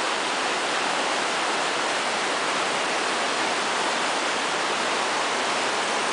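Shallow creek water rushing over rocks, a steady, even hiss.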